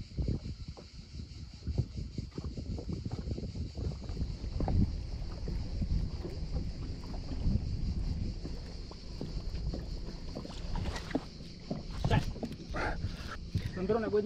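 Wind on the microphone and water lapping against a boat's hull, coming and going unevenly, over a steady high hiss.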